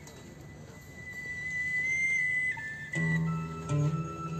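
Music: a long, high, whistle-like held note that steps down slightly, with lower sustained instrument notes coming in about three seconds in.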